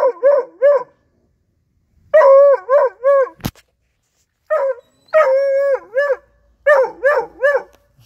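Four-month-old Bluetick Coonhound puppy baying at a raccoon, in bouts of short wavering howls, a few held longer, about three to a bout. One sharp knock near the middle.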